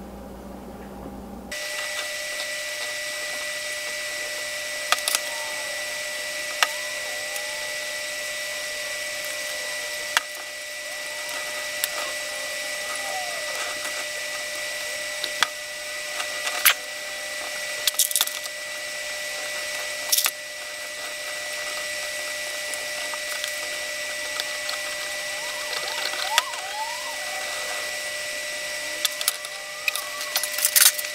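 A steady high whine and hiss, with scattered sharp clicks, knocks and a few short squeaks of glue-up handling: a glue bottle and wood biscuits being worked into oak boards.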